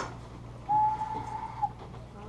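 A small handmade whistle shaped like a carrot, blown once: a single steady note lasting about a second, dipping slightly in pitch as it ends.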